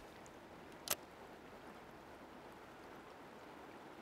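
Faint, steady rush of river water flowing, with one short click about a second in.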